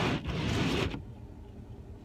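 Windshield wiper blades sweeping over an ice-glazed windshield with a loud scraping noise, heard from inside the car's cabin. About a second in they stop, leaving only the low, steady rumble of the idling car.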